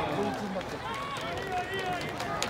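Many voices shouting and calling out at once from a baseball crowd and players as a batted ball is in play, over a steady open-air background.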